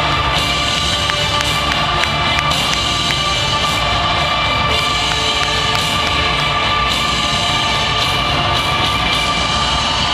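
Rock music playing over an arena's sound system for a video-board highlight reel, steady and loud throughout, with cheering mixed in.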